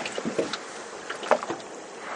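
Sea water lapping and slapping against the hull of a small boat, with a couple of brief knocks.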